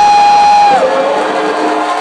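Live band with a cheering crowd: one long held note slides up at the start, holds steady, then drops lower about a second in.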